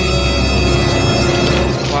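Background music: held chord tones over a steady low drone, thinning out near the end.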